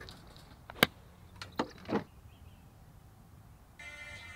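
A golf club striking the ball in a short wedge shot about a second in: one sharp click, followed by a few fainter clicks.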